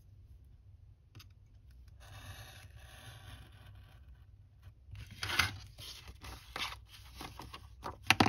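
Craft knife drawn along a metal ruler, cutting slots through paper: a faint scrape about two seconds in, then louder short scrapes and paper rustling in the second half.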